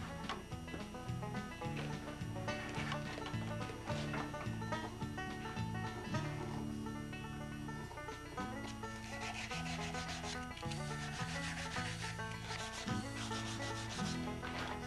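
Knife and hands working a carved wooden loon: short, repeated scraping and rubbing strokes on the wood, thickest in the second half, over soft background guitar music.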